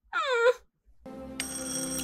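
A short falling vocal cry, like a sympathetic "aww", then after a brief pause a held chord of steady ringing tones from the film's music.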